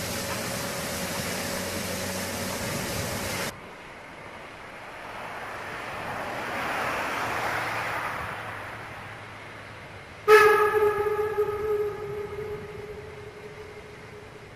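Narrow-gauge steam locomotive: a steady hiss of steam close up, then the train's sound swelling and fading as it works away. About ten seconds in comes one loud steady-pitched steam whistle blast, about a second and a half long, dying away with an echo.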